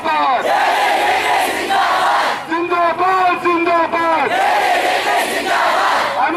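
Protest slogan chanting in call and response: one man shouts a slogan through a microphone and a large crowd of students shouts the answer back together. The crowd's answer comes twice, with his shouted call between.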